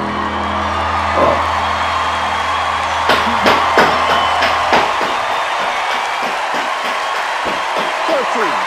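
The last held chord of a slow piano ballad fading out about five seconds in, under a TV studio audience cheering, whooping and applauding. A few sharp, louder hand claps stand out around three to four seconds in.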